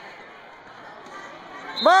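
Low, steady background noise of a gymnasium during a basketball game, with no distinct impacts, then a man's voice shouting near the end.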